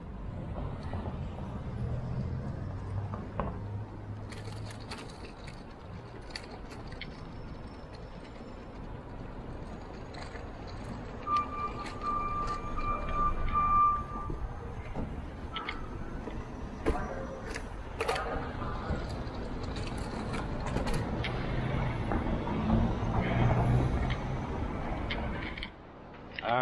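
City street traffic: cars driving past with a low rumble that swells and fades. A steady high-pitched tone sounds for about three seconds midway, and short clicks and knocks come and go.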